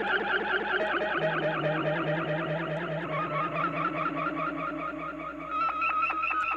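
Electronic ambient intro from effects and looping pedals: a rapidly fluttering, warbling texture of several pitched tones that slowly slide downward. A steady high tone comes in near the end.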